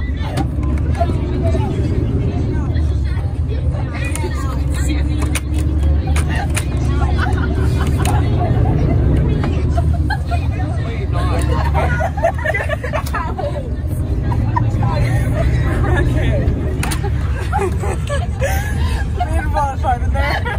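Indistinct chatter and laughter of a group of teenagers inside a charter coach bus, over the bus's steady low engine and road rumble.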